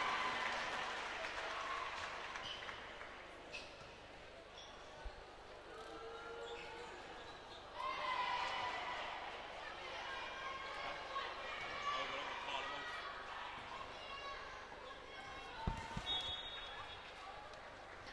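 Basketball arena sound during play: voices of players and crowd echoing in a large hall, with a few basketball bounces on the hardwood court. The crowd noise dies away over the first few seconds, and the voices are loudest in the middle.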